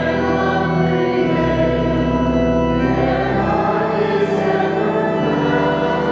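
Church organ accompanying a hymn sung by many voices, held chords with the bass note changing twice.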